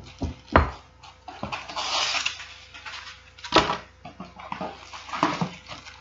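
Plastic wrapping rustling and crinkling as a wrapped warmer piece is handled, with a few sharp knocks of the pieces and box, one right at the start, one just after, and one about halfway.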